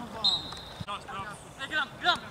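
Football players shouting on the pitch, with a short high whistle blast near the start and a single sharp thud of the ball being struck about a second in.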